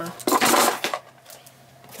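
A brief crinkling rustle of plastic packaging being handled, lasting just over half a second, then quiet.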